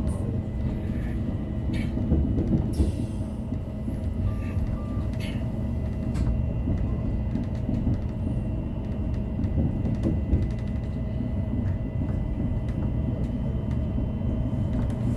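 Electric narrow-gauge railcar running along the track, heard from inside the driver's cab: a steady low rumble of motors and wheels, with scattered clicks and two short beeps a little over four seconds in.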